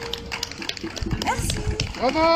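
A held electric keyboard note fades out at the end of a song, leaving scattered small knocks and a brief high, rising call from someone in the audience about a second and a half in.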